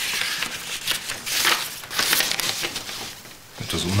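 Paper rustling and crinkling in several short bursts as a letter is drawn from its envelope and unfolded.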